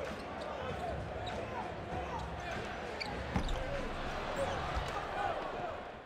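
Faint basketball-game sound in an arena: ball bounces and faint voices over a steady murmur, with a low thump about three and a half seconds in.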